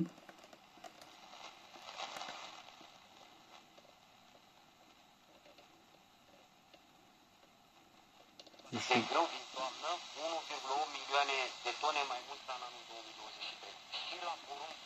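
Selga-404 transistor radio on the medium-wave band: faint static hiss while it is tuned, then, about nine seconds in, a station comes in with a voice through the small loudspeaker.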